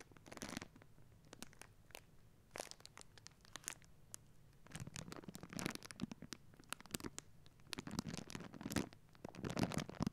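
Small clear plastic bag being crinkled and rustled in irregular bursts of crackle, sparse at first and busier from about halfway through.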